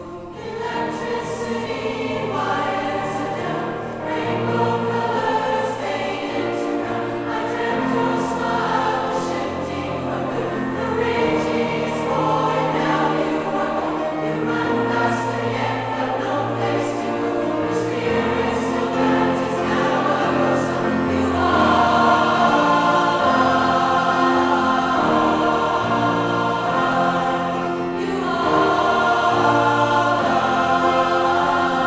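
Large mixed choir of men and women singing a pop song, growing louder about two-thirds of the way through.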